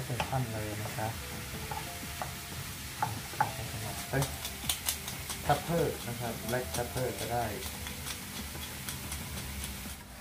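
Diced onion and carrot sizzling steadily in a non-stick frying pan over a gas flame, with a wooden spatula stirring and scraping through them in many short clicks and scrapes.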